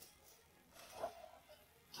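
Near silence, with one brief faint sound about a second in.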